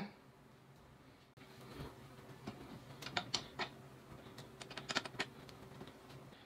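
Faint, irregular small metal clicks and ticks of screws being fitted into the steel tilt-mechanism plate under the chair seat, starting about a second and a half in.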